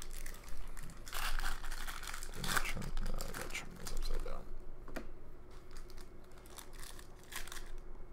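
Trading-card pack wrappers crinkling and tearing open, with cards being handled, in short irregular rustles that are busiest in the first half.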